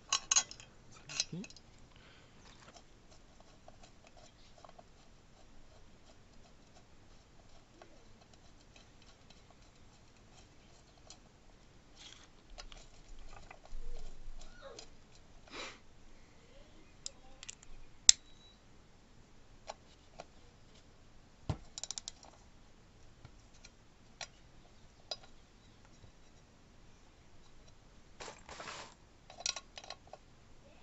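Scattered light metallic clicks, taps and scrapes of hand tools and small metal parts being handled while the oil level sensor is fitted inside a small stationary engine's crankcase. One sharp click about eighteen seconds in is the loudest.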